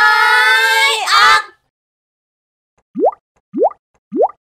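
A high, drawn-out voice-like call for about the first second and a half, then after a pause three quick rising 'bloop' cartoon sound effects about half a second apart.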